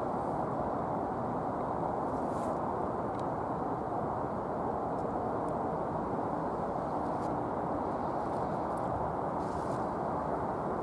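Steady, even roar of distant road traffic, with a few faint ticks.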